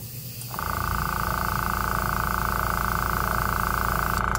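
Small tankless airbrush compressor running steadily under load as air flows out through the held-open airbrush, set at 30 psi. The steady sound with its hiss of escaping air starts about half a second in.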